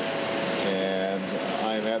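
Steady hiss and whine of aircraft engines running on an airport apron, under a man's voice that holds a drawn-out "uh" about halfway through and starts speaking again near the end.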